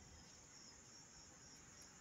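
Near silence with a faint, steady high trill of night crickets.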